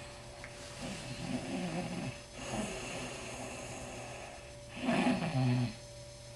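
A person snoring: a long, rough snore about a second in and a louder one near the end.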